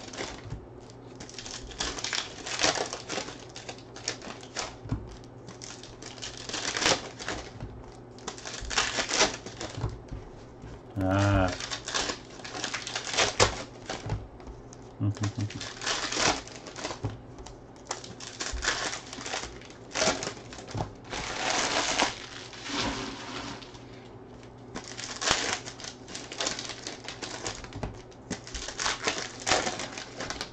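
Foil trading-card pack wrappers crinkling and tearing as hands open and handle sealed packs, in a string of irregular crackly bursts.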